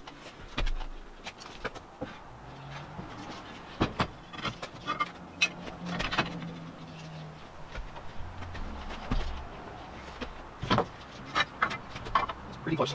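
Hand-lever Universal Bender UB100 being worked on 6 mm flat steel bar: scattered metal clicks and clunks as the handle is pulled around and the bar is shifted in the dies.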